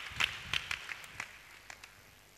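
Scattered hand claps from a few people that thin out and fade away over the first second and a half.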